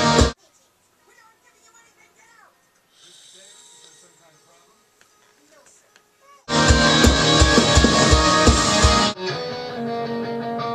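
Rock music with a steady drum beat and guitar stops abruptly just after the start. A quiet stretch follows, holding faint voices and a brief hiss. The full band returns about six and a half seconds in and thins to guitar near the end.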